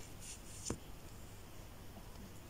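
Faint rustle of a beaded brooch blank on its paper backing being handled and set down on a bead mat, with one light tap a little under a second in.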